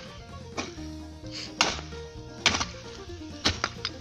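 Grubbing hoe (enxadão) striking hard, compacted soil, about five blows roughly a second apart, loosening it. Background music with held notes plays throughout.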